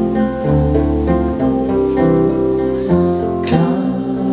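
Two acoustic guitars strummed and picked through chord changes, with a man's voice singing over them.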